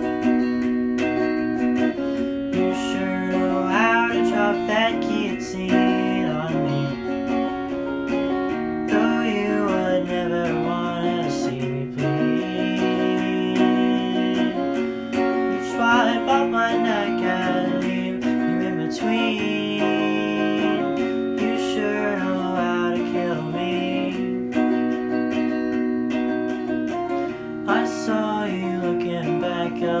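Squier Affinity Stratocaster electric guitar played through a Peavey Backstage practice amp, chords and picked notes without a break, with a young male voice singing the melody over it at intervals.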